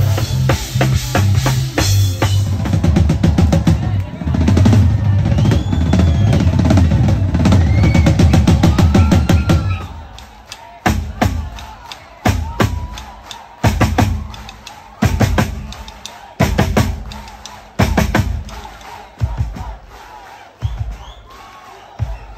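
Live band with a full drum kit and heavy bass playing loud and dense; about ten seconds in the band drops out and the Tama drum kit carries on alone with hard, ringing strikes roughly every one and a half seconds and lighter playing between them, fading toward the end.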